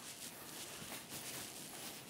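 Faint rustling of bedding and soft movement over a quiet room hiss.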